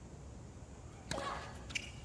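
Tennis serve: one sharp crack of racket strings on the ball about a second in, against a hushed stadium. It is an unreturned serve that wins the game, and a commentator exclaims "Oh" as it lands.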